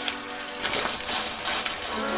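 Small plastic Lego Art pieces rattling as they are poured from a plastic bag into plastic sorting trays, a dense, continuous clatter that is loudest in the middle. Background music plays underneath.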